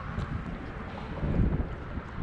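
Wind buffeting a body-worn action camera's microphone, an uneven low rumble that swells about a second and a half in.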